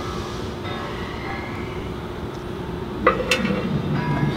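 A metal scribe scraping a line into the tread of a spinning pickup-truck tire, with a steady rolling whir and a faint whine from the free-turning wheel. A sharp click about three seconds in.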